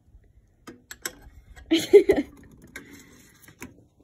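Clicks and knocks of hands working an analytical balance and handling a porcelain evaporating dish, with a louder short clatter about two seconds in.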